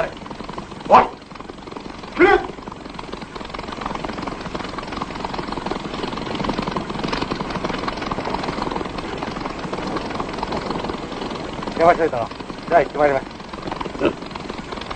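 Steady drone of propeller aircraft engines, swelling through the middle and easing off again, with brief shouted voices before and after.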